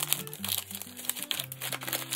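Plastic and paper packaging crinkling on and off as snack packets and a wrapped bundle of dried flowers are handled and pushed into a woven bamboo basket, over background music with steady held notes.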